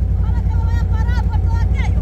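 Steady low rumble of wind buffeting the microphone, with faint voices of people talking in the background.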